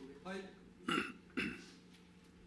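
A man's brief vocal noises close to a microphone: a short voiced sound, then two short, sharp bursts about half a second apart.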